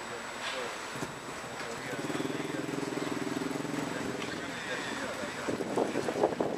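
A motor vehicle engine running close by, swelling for about three seconds and then fading, over street noise, with wind buffeting the microphone near the end.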